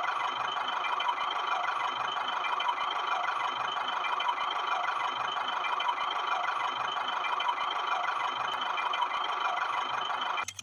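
Small electric motor of a homemade toy tractor running steadily as it drives along, a continuous even whir with no change in speed.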